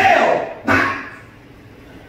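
A man's voice preaching: two short spoken phrases in the first second, then a pause.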